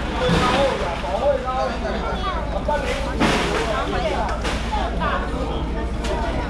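Several people talking over one another in busy workplace chatter, with a steady low hum underneath and a short rush of noise about three seconds in.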